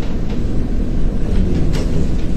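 A loud, steady low rumble with no speech over it.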